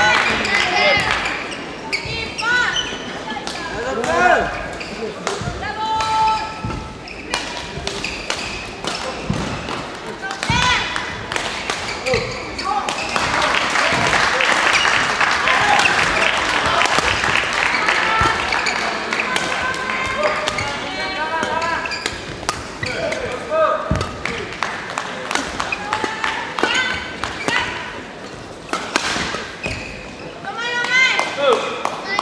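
Badminton play echoing in a large sports hall with several courts in use: sharp racket hits on the shuttlecock and footfalls on the court, with shouts and voices of players. A stretch of denser, louder background din runs through the middle.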